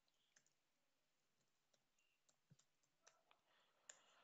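Near silence with a few faint, scattered computer keyboard clicks as a file name is typed.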